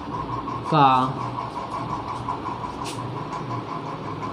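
A man says one drawn-out word about a second in. Under it a steady background hum runs throughout, and a single short click comes near three seconds.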